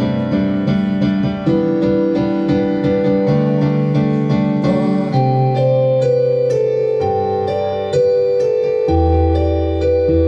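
Electronic stage keyboard on a piano voice, played live: an instrumental passage of held chords over a bass line. The chords change every second or two, and a deep bass note comes in near the end.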